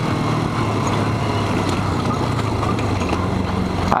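Motorcycle engine running steadily under way, heard from a helmet-mounted camera.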